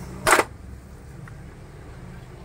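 A single short, loud plastic clack about a quarter of a second in, as the outer plastic housing of an Epson inkjet printer is pulled off its chassis.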